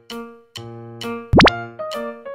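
Light, bouncy keyboard background music, chords struck about twice a second. About a second and a half in, a short, loud cartoon-style 'bloop' sound effect sweeps sharply upward in pitch.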